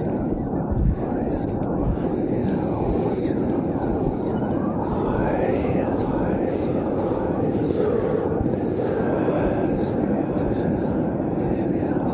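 Several voices wailing and howling in overlapping rising and falling glides over a loud, steady rumble.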